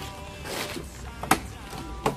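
A single sharp click about halfway through, the door latch of an old Rolls-Royce being worked as the door is opened, over faint background music.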